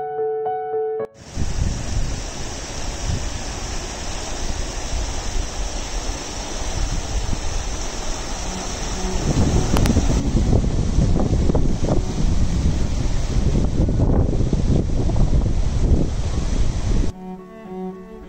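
Wind buffeting the microphone in gusts, rising to louder gusts about halfway through. It is framed by music: a few piano notes at the start and bowed strings near the end.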